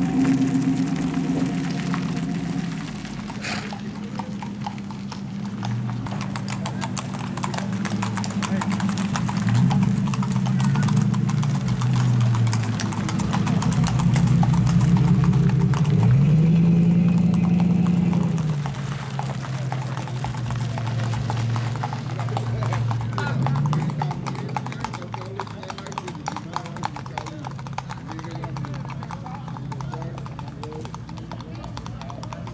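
Hooves of a gaited Tennessee Walking Horse clip-clopping on a paved road in a rapid, even beat. A low, wavering hum runs underneath and rises and falls in pitch a few times.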